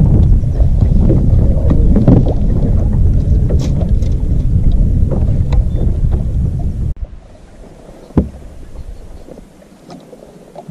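Wind buffeting the microphone on an open fishing boat, a loud low rumble that cuts off suddenly about seven seconds in. A quieter stretch follows, with one sharp knock about a second later.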